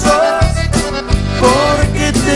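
Norteño-Tejano band music: a button accordion plays a gliding lead melody over a steady bass line and a regular drum beat.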